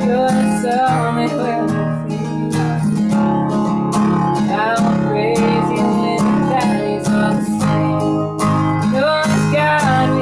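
A cutaway steel-string acoustic guitar with a capo, strummed in a steady rhythm, with a woman singing over it.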